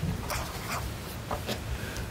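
A few short rustles and light scratches of paper and pens being handled at a meeting table, over a steady low room hum.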